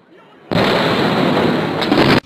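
A large explosion's blast arrives about half a second in: a sudden, very loud rush of noise that holds steady for well over a second and then stops abruptly.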